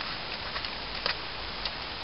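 A few faint clicks from handling an aluminium LED torch as its body is unscrewed and the battery cage drawn out, over a steady background hiss.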